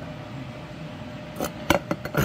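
Hands handling a solid rubber driveshaft carrier bearing: a few sharp clicks and a knock in the last half second, over a steady low background hum.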